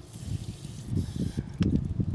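Hands handling a Rain Bird sprinkler valve in its valve box, with low knocks and thuds. A steady hiss lasts about a second and a half, then cuts off suddenly.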